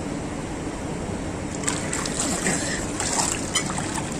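Swimming pool water splashing and sloshing as a swimmer surfaces at the pool ladder. The splashing starts about halfway through, over a steady background hiss.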